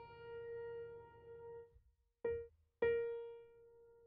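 A sampled grand piano (Native Instruments' The Grandeur) plays one repeated note. The note struck with full sustain pedal rings and fades, then cuts off. A short clipped strike comes about two seconds in, and the same note is struck again and left to fade.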